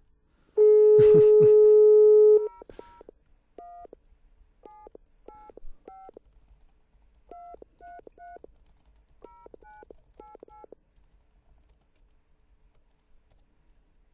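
Telephone dial tone held for about two seconds, then a number being keyed in on a touch-tone phone: about fourteen short two-note beeps in irregular groups. It is a dropped call being redialed.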